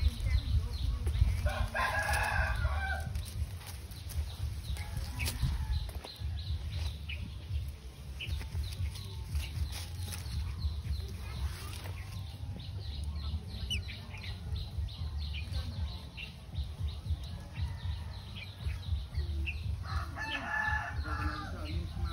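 A rooster crowing twice, once about two seconds in and again near the end, over a steady low rumble.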